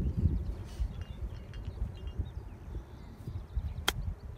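Wind rumbling on the microphone, with one sharp click near the end as a golf club strikes the ball on a 50-yard pitch shot.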